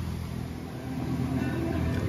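Steady low mechanical hum of a running motor, even in level with no breaks.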